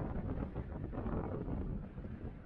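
Wind buffeting the camera microphone on a moving chairlift: a steady, low, fluttering noise with no distinct events.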